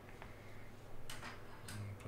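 Trading cards being handled by hand: a light click, then two short rustles of cards sliding against each other, about a second in and near the end.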